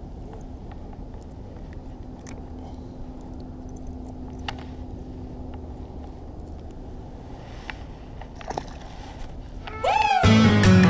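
Steady low rumble of wind on an action-camera microphone over open water, with a few faint clicks and a faint steady hum that fades out about two-thirds of the way through. Electronic music cuts in right at the end.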